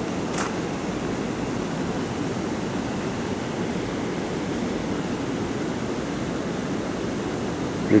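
Steady, even rushing background noise with no distinct events, apart from one faint click about half a second in.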